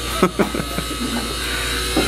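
Electric hair clippers buzzing steadily, with brief faint voices in the background.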